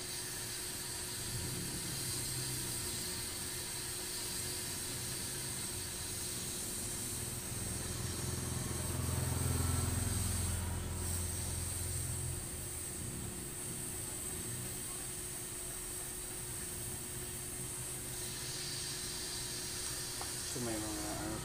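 Epson L3210 ink-tank printer printing a test page, its motors running as the sheet is fed through, loudest about halfway through. A steady hiss runs underneath.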